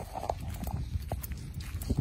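Footsteps on dry grass and stubble while walking, as irregular soft strokes over a steady low rumble.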